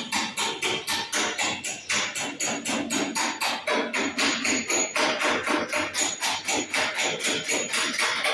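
A fast, even run of sharp knocks, about five a second, keeping a steady beat throughout.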